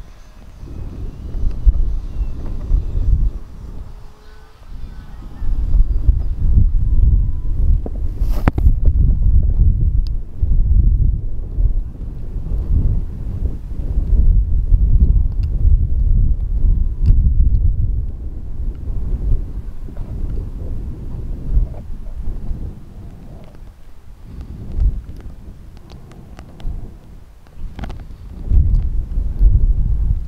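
Strong wind buffeting the microphone in gusts: a rough low rumble that swells and dies away over a few seconds at a time, with a couple of sharp clicks.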